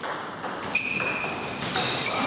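Table tennis ball being hit back and forth in a doubles rally, sharp clicks of bat and table about every half second. Two short high squeaks from players' shoes on the court floor, about a second in and near the end.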